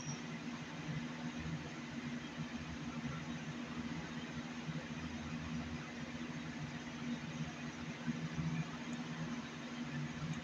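A steady low machine hum with a constant hiss, with a few faint rustles about seven to eight seconds in.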